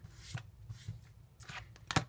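Light handling sounds of a plastic stamp-pad case being moved across a craft cutting mat: a faint rustle and a couple of small taps, with a sharper click just before the end.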